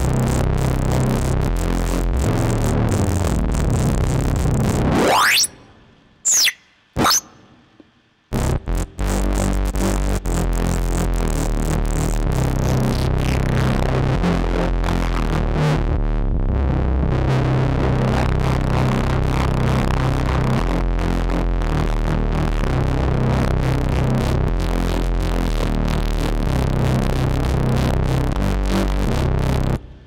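Electronic synth music from an Oscillot modular software-synthesizer patch built to imitate a Native Instruments Massive sound: a heavy low synth line with a pitch sweep rising about five seconds in, then two short rising chirps and a break of about two seconds before the music resumes. It stops just before the end.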